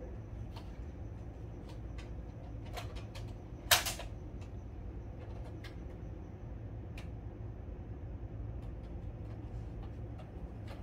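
A Nerf foam-dart blaster going off once with a short, sharp burst about four seconds in, amid light plastic clicks as the blaster is handled.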